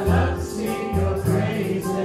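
Children singing a worship song with acoustic guitar accompaniment, over a steady rhythmic beat.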